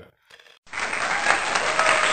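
Crowd applause as an edited-in sound effect, cutting in abruptly about two-thirds of a second in and running on at full level.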